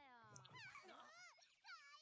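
Near silence, with faint, high-pitched voices speaking in short phrases.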